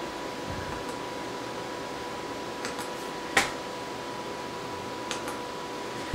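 Computer case fans running at about 1300 to 1700 RPM, a steady whir with a faint steady whine in it. A single sharp click comes about three and a half seconds in.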